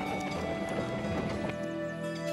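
Cartoon soundtrack music with sound effects of an animal-drawn cart's hoofbeats clip-clopping. About one and a half seconds in, the effects stop and calm, sustained music carries on.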